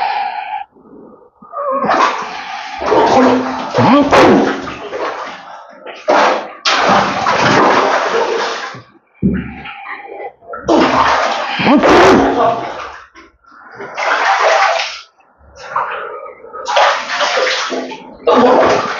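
Water splashing and sloshing in a small tiled bathroom tub, in about five bursts of one to three seconds each, as a person sitting in it moves and throws water. Voice-like sounds, such as gasps or groans, are mixed into a couple of the bursts.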